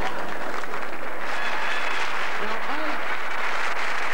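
Theatre audience applauding, steady dense clapping, with a short voice rising and falling from the crowd about two and a half seconds in.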